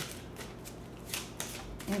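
A deck of cigano fortune-telling cards being shuffled by hand: several short swishes of the cards sliding against each other.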